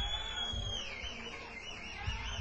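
A loud, high whistle from the crowd: one long steady note that then drops lower and warbles up and down, about four times a second.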